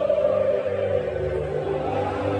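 A national anthem played slowly over the stadium's PA, with a large crowd singing along in long, held notes.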